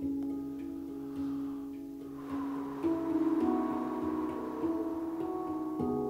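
Handpan played slowly and softly in a meditative way: single struck notes that ring on and overlap one another, a new note every half second or so, the playing growing a little fuller from about three seconds in.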